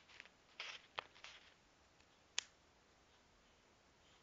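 Faint handling noises of a hair clip being picked up: a few soft rustles and small clicks in the first second and a half, then one sharp click about two and a half seconds in.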